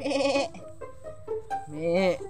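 Goat bleating: one short, quavering call at the start.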